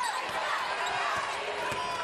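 Basketball dribbled on a hardwood court, a few low knocks over steady arena crowd noise.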